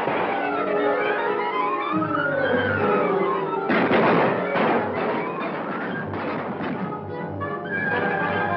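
Dramatic orchestral film score, its melody rising and falling. About four seconds in, a sudden loud bang cuts through the music.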